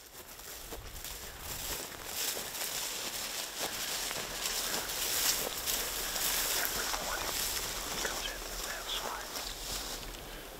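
Outdoor field ambience: a steady hiss of breeze and rustling that fades in over the first second or two. Low whispered voices come in near the end.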